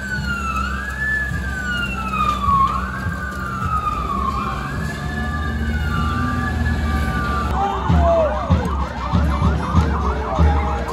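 Police vehicle siren in a slow rising-and-falling wail, changing suddenly about seven and a half seconds in to a fast, rapidly repeating yelp.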